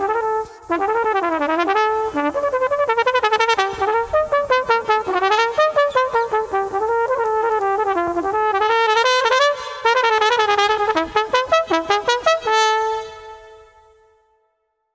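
Solo cornet playing a fast passage of quick, separately tongued notes running up and down. It ends on a long held note that fades away near the end.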